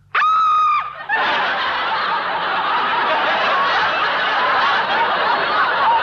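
Studio audience laughing, a sustained wave of laughter that starts about a second in and holds steady. It is preceded by a brief high-pitched held note lasting under a second.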